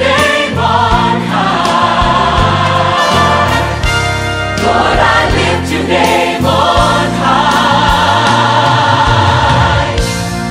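Christian choir music: several voices singing together over sustained bass with a regular percussive beat.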